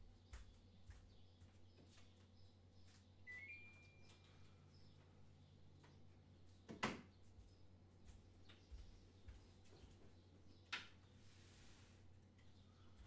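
Near silence: room tone with a low steady hum and two faint knocks, one just past the middle and one near the end.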